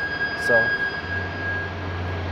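The truck's backup alarm sounding as one steady high tone that cuts off near the end, as the shifter is moved out of reverse. A low steady hum comes in about a second in.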